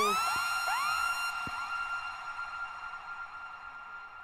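A DJ's siren-like sound effect over the PA system: a high tone sweeps up and settles on one steady pitch, with echoing repeats sweeping up behind it. The tone is then held and slowly fades.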